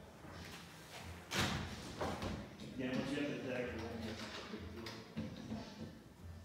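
Glass panel of a folding door wall swung shut, with a sharp knock about a second and a half in and a few lighter knocks of the panel and its hardware after.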